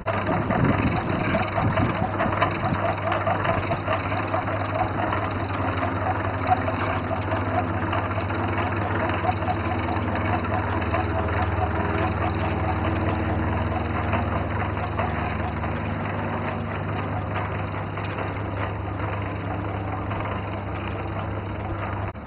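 A small engine running steadily with a low hum and a fast rattle, easing off a little in the second half.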